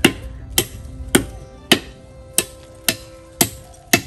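Sharp, evenly paced strikes on a bamboo stake, a little under two a second and eight in all, as a hand tool pounds or chops at the pole.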